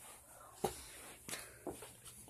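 Faint footsteps and shuffling indoors, with a few soft knocks as someone walks.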